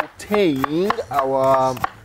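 A man's voice with long drawn-out vowels, over a few light knife chops on a cutting board.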